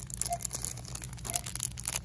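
Crinkling of the plastic packaging on a pack of paint brushes as it is handled and taken off a pegboard hook, in quick irregular crackles.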